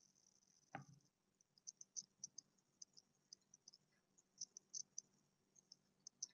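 Near silence: room tone, with one faint click just under a second in and scattered faint, irregular high-pitched ticks.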